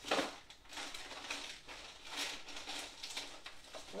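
Rummaging through a refrigerator: food packages and containers rustling, crinkling and clinking. The sharpest crinkle comes just at the start.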